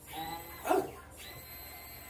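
Immersion blender motor whining in a pot of soup. It cuts out with a falling whine about half a second in, then starts up again about a second in and runs steadily.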